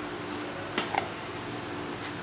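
A metal spoon clicks twice against the bowl a little under a second in as it scoops soaked glutinous rice, over a steady low hum.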